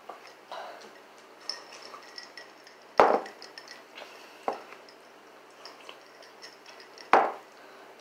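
Tableware knocks while eating: a fork clicking against plastic noodle trays, with two loud sharp knocks about three and seven seconds in and a smaller one between them.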